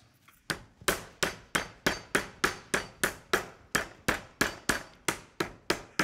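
Metal meat mallet pounding a butterflied pork chop through plastic wrap on a wooden cutting board. The flat face strikes in a steady rhythm of about three blows a second, starting about half a second in, flattening and stretching the meat.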